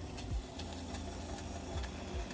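A steady low mechanical hum, like a small motor running, growing stronger about half a second in.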